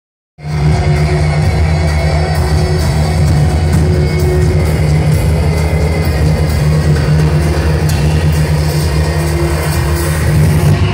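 Loud live electronic rock music through an arena PA, recorded from the stands, with a heavy, steady bass line dominating. It cuts in abruptly about half a second in.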